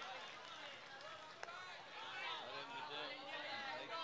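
Faint background voices of people talking, with one sharp click about a second and a half in.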